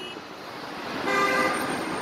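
A vehicle horn sounding one steady honk of about a second, starting about halfway through, over street traffic noise.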